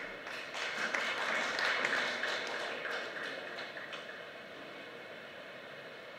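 Audience clapping that swells about a second in and dies away over the next few seconds.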